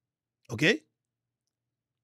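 Speech only: a single short spoken "OK?", rising in pitch, about half a second in. The rest is dead silence.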